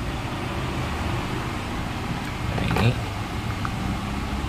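A steady low rumble in the background, with a short louder sound rising and falling about two and a half to three seconds in.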